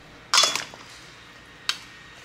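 Green plastic salad servers tossing pasta salad in a metal mixing bowl: one sharp scraping clink against the bowl about a third of a second in, with a brief ring, and a short click near the end.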